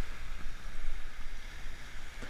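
Wind noise on the microphone over the wash of small surf waves running up the beach, an uneven steady hiss.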